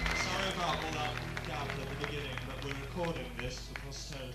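Indistinct talking with a few scattered claps on a live soundboard recording between songs, over a steady electrical hum.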